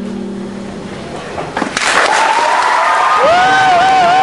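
The sustained organ-like chord of the backing track dies away in the first second. Audience applause breaks out about two seconds in, and about a second later a high cheer with a wavering, warbling pitch rises above it.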